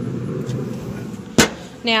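Pit Boss pellet smoker's fan running with a steady low hum. About one and a half seconds in, a single sharp metal clunk as the smoker lid is shut, and the hum is muffled afterwards.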